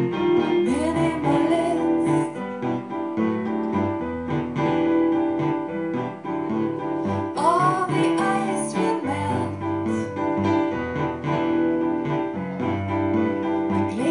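Live pop music: an electric keyboard playing sustained chords over a drum kit with cymbal strokes, and a woman's voice singing a few gliding notes about halfway through.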